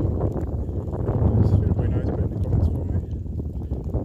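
Wind buffeting the microphone: a steady low rumble with little high sound in it, under a few faint handling clicks.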